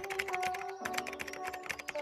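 Keyboard-typing sound effect, a quick, continuous run of key clicks, over background music with steady held notes.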